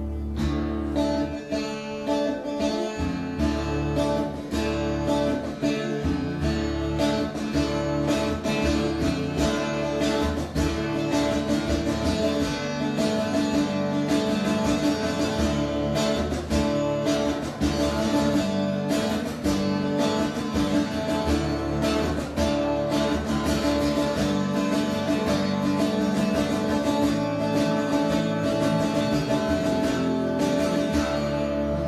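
Acoustic guitar played solo in a steady, continuous run of picked and strummed notes.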